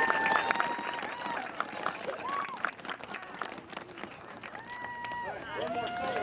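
Children's choir singing: a few held notes carry on quietly through the middle, then the full choir comes back in together near the end.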